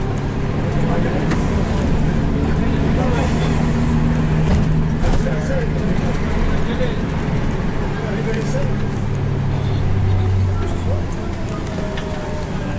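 Minibus engine running with road noise, heard from inside the cabin; the engine note shifts up and down as the bus slows and picks up speed.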